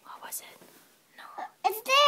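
A young child whispering, then his voice rising into a louder, pitched call near the end.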